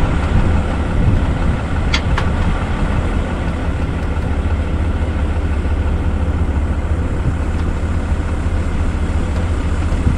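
An engine idling steadily, a low constant hum with fixed tones, with two sharp clicks about two seconds in.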